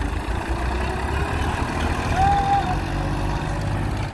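Massey Ferguson 241 DI tractor's three-cylinder diesel engine running steadily under heavy load as it hauls a trolley loaded with earth, the load enough to lift its front wheels.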